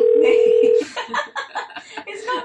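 Telephone calling tone: one loud steady pitch that stops under a second in, followed by faint voices.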